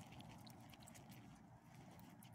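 Faint, scattered crunching and ticking of small dogs' paws and footsteps on loose gravel.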